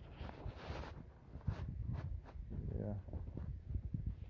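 Phone microphone rubbing and knocking against clothing, an uneven low rumbling handling noise, with a short bit of a voice about halfway through.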